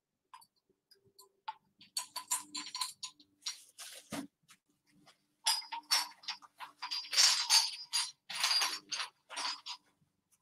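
Small ceramic Goebel angel figurines clinking and knocking together as they are picked up and gathered on a table: a few light clinks at first, then a busier run of clattering and scraping in the second half.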